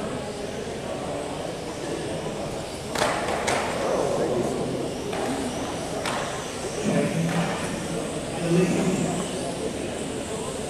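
Busy large-hall ambience at a 1/12-scale electric RC car race: a steady murmur of voices, with sharp knocks and clatters from the small cars on the track about three seconds in, again half a second later, and about six seconds in.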